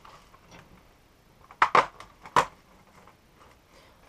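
Cardboard door of a chocolate advent calendar being pushed open, with about three sharp crunches in the middle as the card gives way and the chocolate is pressed out.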